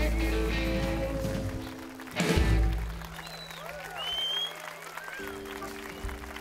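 A live band ends a song: a held chord fades, a single final drum-and-cymbal hit lands about two seconds in, then audience applause with whistling over a low sustained note, and a new steady chord comes in near the end.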